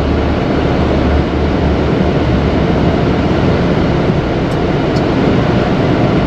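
A Mercedes-Benz Atego truck's diesel engine running, heard from inside the cab while the truck crawls in slow traffic: a steady low drone with road noise.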